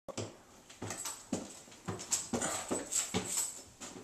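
A dog whimpering and yipping in short repeated cries, about three a second.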